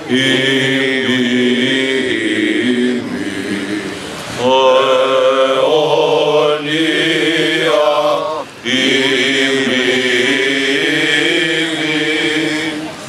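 A group of men singing Greek Orthodox Byzantine chant. The lines are long and sustained, with short breaths between phrases about four and eight and a half seconds in.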